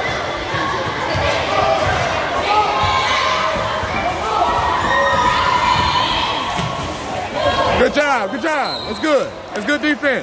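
Spectators in a gym talking and calling out indistinctly, with a basketball bouncing on the hardwood court. Near the end comes a quick run of sneaker squeaks on the floor, rising and falling in pitch.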